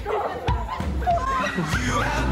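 Teenagers' excited voices, short high shrieks and shouts rising and falling in pitch, with music carrying on underneath and growing fuller near the end.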